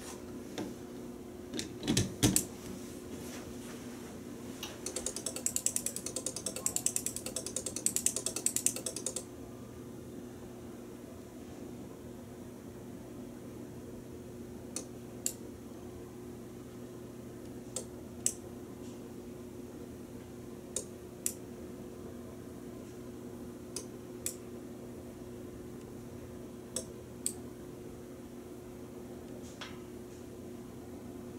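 Sharp switching clicks from a home-built sequencer driving a vintage Otis elevator floor indicator as it steps its lamps from floor to floor. The clicks come in pairs about half a second apart, roughly every three seconds, over a steady low hum. Earlier there are a few knocks and then several seconds of fast rattling ticks.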